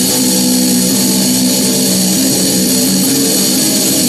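Electric guitar (a Stratocaster) played through a death metal distortion pedal, with the low string tuned down to B, playing held, distorted notes that change every second or so.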